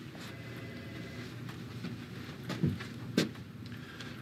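Quiet room tone, with two brief soft sounds about two and a half and three seconds in.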